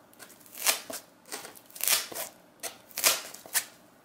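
Leatherman Raptor rescue shears snipping through a thick foam mat: a run of short rasping cuts about a second apart, the loudest about three seconds in.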